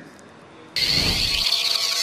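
A short quiet pause, then about three-quarters of a second in a sudden, steady hissing whoosh with a brief low rumble: a TV broadcast transition sound effect leading into a contestant's introduction.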